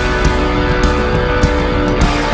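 Live rock band playing a loud instrumental passage, with held, distorted electric guitar notes over bass and drums.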